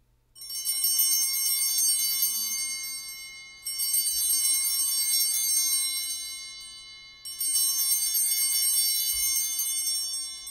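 Altar bells rung three times, each ring a bright jingle of many high tones that lasts about three seconds and then fades. They mark the elevation of the consecrated host.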